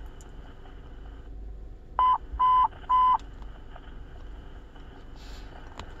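Three short, evenly spaced beeps at one steady pitch from a police handheld radio's speaker, about two seconds in, over faint channel hiss: dispatch alert tones ahead of a broadcast.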